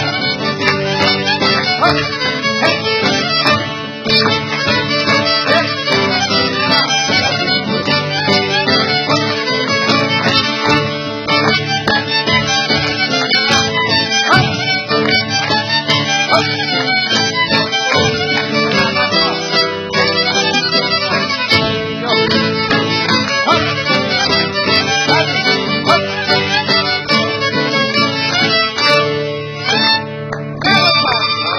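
Traditional Cypriot folk dance music, led by a violin, playing continuously.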